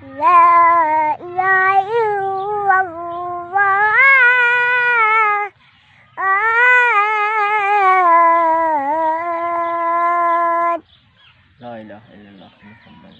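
A single high-pitched voice chanting Arabic recitation in long, sliding, ornamented phrases. It breaks off briefly about five and a half seconds in, then ends on a long held note that stops short near the end.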